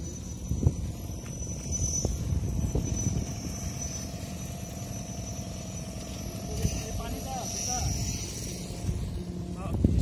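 A steady low engine hum with a thin high whine above it, with people talking in the background, more clearly near the end.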